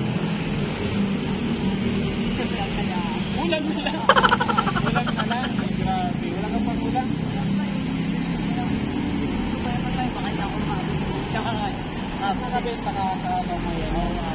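Steady road traffic passing close by, with vehicles going past. About four seconds in there is a loud, rapid rattling burst lasting about a second and a half.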